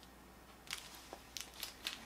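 Faint crinkling of plastic packaging being handled, a few short crackles spread through the second half.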